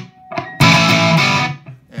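A single chord strummed on an SG electric guitar about half a second in. It rings for about a second, then is cut off short.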